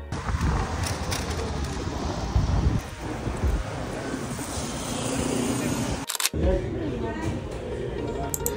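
Busy city street ambience: traffic rumble and the hubbub of passers-by. At about six seconds it cuts to the chatter of a crowded restaurant dining room.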